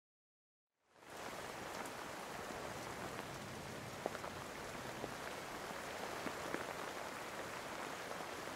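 Rain falling: a steady hiss with scattered drop ticks, fading in about a second in.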